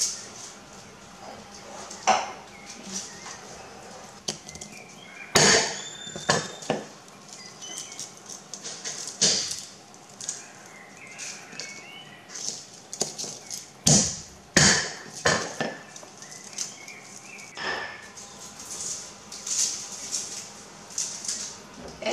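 Wooden pestle striking garlic cloves in a clay mortar to loosen their skins for peeling, a few sharp knocks spaced irregularly. Between the knocks, papery garlic skins crackle as cloves are peeled by hand.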